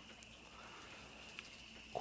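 Quiet outdoor background: a faint, steady high-pitched tone with one small tick about a second and a half in.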